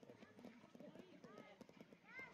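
Faint footsteps clicking on a path, with quiet distant chatter of people in the background.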